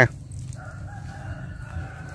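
A rooster crowing faintly: one long drawn-out call starting about half a second in, its pitch sinking slightly toward the end, over a low steady rumble.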